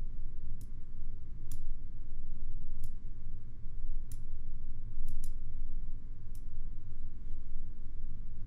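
Computer mouse clicking as keyframe handles are worked in editing software: short single clicks about once a second, two close together about five seconds in. A steady low hum sits underneath.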